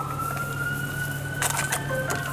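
An emergency-vehicle siren wailing, its pitch climbing slowly and steadily, over a steady low hum. A brief clatter sounds about one and a half seconds in.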